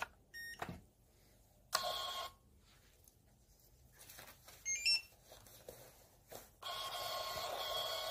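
PAX S80 card terminal: a short beep as the chip card is inserted, a brief burst from its thermal receipt printer about two seconds in, and a quick rising run of beeps near the middle. In the last second and a half the thermal printer runs steadily, printing the receipt.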